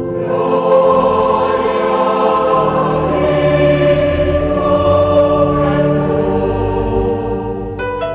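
A choir singing slow, sustained chords. Just before the end it gives way abruptly to a different piece of music.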